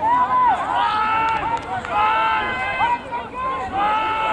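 Several voices shouting over rugby play, with loud, high-pitched, drawn-out calls repeated throughout.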